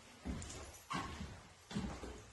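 Footsteps on bare wooden floorboards, three steps about two-thirds of a second apart.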